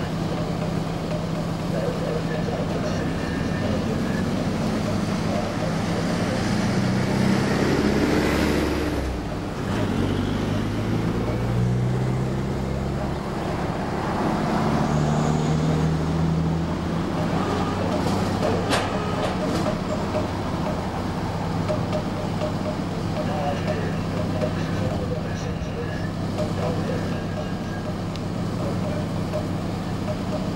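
Lifeboat's diesel engines running steadily at idle on the slipway before launch, a low hum. Between about 7 and 16 seconds in a louder engine sound rises and falls over it.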